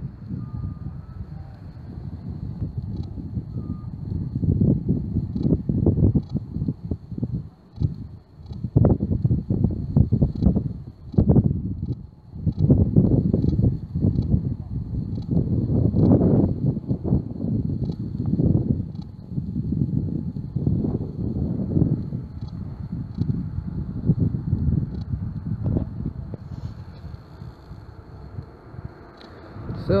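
Wind buffeting a phone microphone outdoors in the cold: irregular low rumbling gusts that swell and drop throughout.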